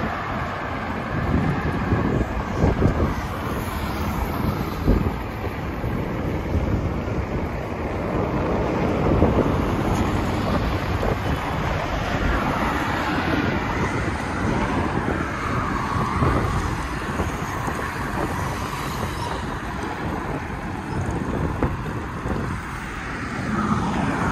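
Wind rushing over the microphone of a camera on a moving bicycle, with the steady noise of traffic on a multi-lane highway alongside.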